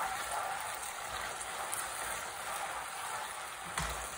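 Spaghetti sizzling in olive oil and starchy pasta cooking water in a frying pan as it finishes cooking, a steady hiss, with a light knock of the tongs just before the end.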